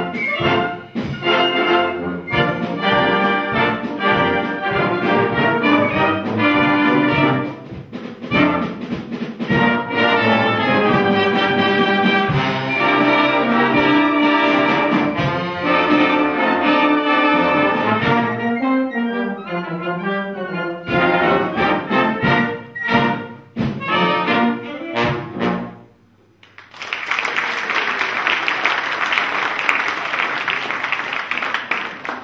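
Wind band of clarinets, saxophones and brass playing live, breaking into short separated chords in its last stretch as the piece closes. In the last few seconds the audience applauds.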